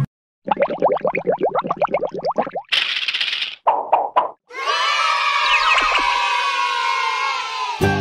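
Animated-logo sound effects: a fast run of springy pitched strokes, a burst of hiss, a few short pops as the cartoon egg opens, then a long held chord with sliding tones that cuts off near the end.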